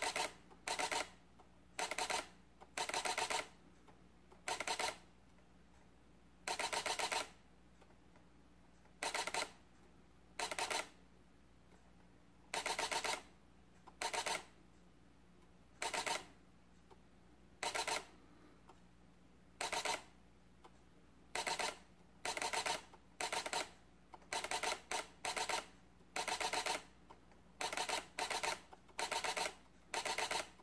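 Sony A77 II camera's shutter firing in high-speed continuous drive: about two dozen short bursts of rapid clicks, each a fraction of a second to about a second long, with brief pauses between them.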